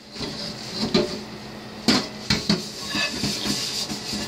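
A hand brush scrubbing the outside of a metal pot in a stainless steel sink, with several sharp clanks of the pot against the sink about a second in and again around two seconds in.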